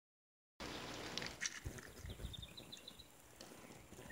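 Faint outdoor background: a few soft knocks, then about halfway through a quick run of around eight high, evenly spaced chirps.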